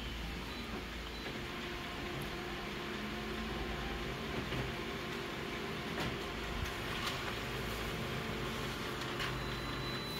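Office colour photocopier running a copy job: a steady mechanical hum with a few light clicks in the second half.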